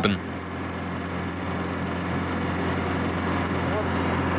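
A vehicle's engine and drivetrain running steadily in fourth gear with the driven axle up on a jack stand, a constant even drone.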